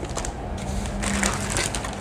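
Clear plastic packaging bag crinkling and crackling as it is handled and pulled out of a cardboard kit box.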